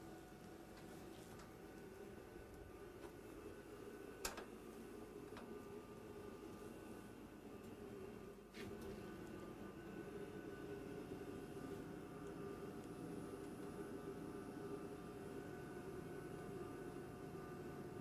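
Faint, steady hum of the space station module's fans and equipment, with a few fixed tones. A light click comes about four seconds in and another about eight and a half seconds in.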